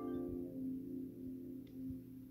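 Read-along page-turn chime: several bell-like tones ringing together and slowly dying away, the signal to turn the page.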